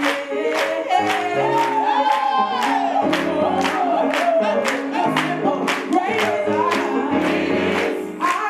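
Black gospel choir singing held chords with a steady beat of hand claps, a little over two a second. A woman's lead voice slides up and down in runs above the choir.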